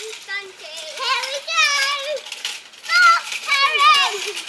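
Young children's high-pitched shouts and calls as they play, one drawn out for about half a second halfway through.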